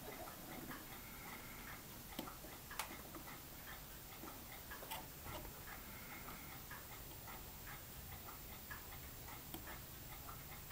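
Faint, irregular light clicks and ticks of fine metal tweezers pressing and bending a thin photo-etched brass part on a brass bending tool, with a few sharper clicks about two and three seconds in.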